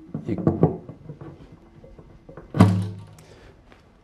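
A single thunk on the acoustic guitar's bridge about two and a half seconds in, as a bridge pin is levered up with pliers, followed by a low ring from the strings and body that fades within about half a second.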